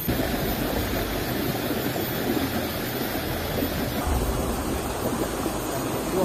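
Steady rushing of water flowing in a small stream, with a change in its sound about four seconds in.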